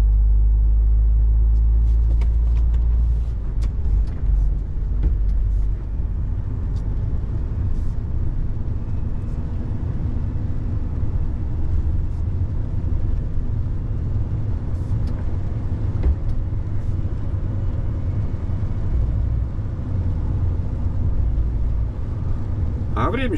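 A heavy truck's engine and tyre noise heard inside the cab while driving: a steady deep rumble, heavier for the first three seconds or so and then a little lighter, with a few faint clicks and rattles.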